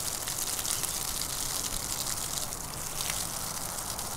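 Pressurised water spraying steadily from the open brass end connector of a Pocket Hose Top Brass expandable garden hose as the hose drains and contracts. The flow is held back by the hose's narrow quarter-inch outlet.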